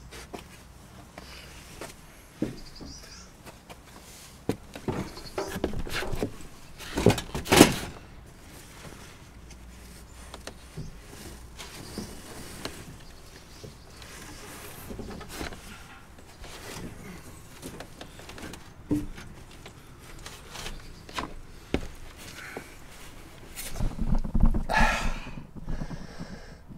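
Scattered light knocks and rustles of a person moving about on a wooden slatted bed frame, with a louder cluster of knocks about seven seconds in. A short laugh near the end.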